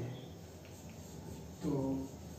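Chalk writing on a blackboard: a few faint, short scratches over a low room hum, with a man's short spoken word near the end.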